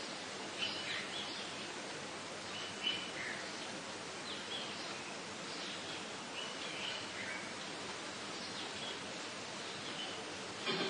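Steady background hiss with faint, short bird chirps scattered through it, about half a dozen.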